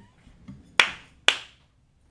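Two sharp hand claps, about half a second apart.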